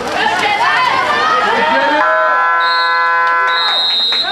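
Voices of players and spectators, then about halfway through a water polo game horn gives one steady electronic buzz lasting nearly two seconds. A high steady tone sounds twice over the buzz.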